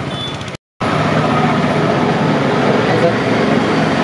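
Indistinct voices over a steady background din. A brief dead-silent gap about half a second in, then voices again.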